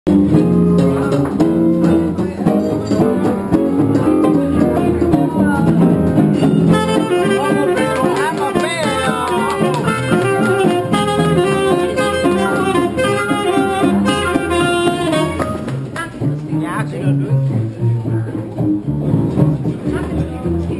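A small live traditional jazz band playing: saxophone, trombone, guitar and plucked double bass. A horn carries a busy lead line through the middle, and the ensemble thins out after about fifteen seconds.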